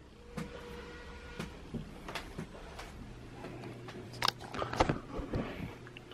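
Quiet room with scattered light clicks and knocks, a denser cluster of them about four to five seconds in, and a faint steady low hum that comes in about halfway through.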